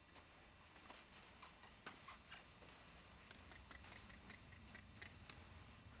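Near silence, with faint, scattered light ticks and clicks.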